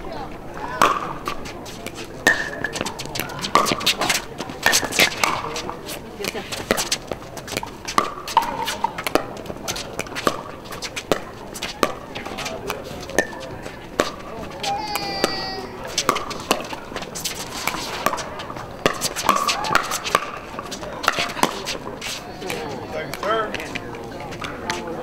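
Pickleball paddles hitting a hard plastic ball in rallies: a steady run of sharp, irregular pocks, some loud and close, others fainter, over faint voices in the background.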